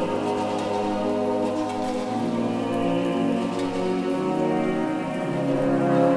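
Renaissance polyphony sung by voices with early brass and wind instruments (sackbut among them), held chords that change about two and about five seconds in, with long reverberation. Faint scattered ticks of water dripping in the cave sound over it.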